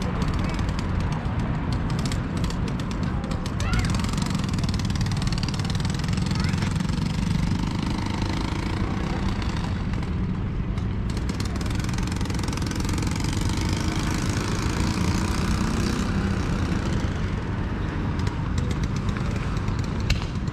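Steady street ambience of road traffic with indistinct voices in the background, dominated by a continuous low rumble.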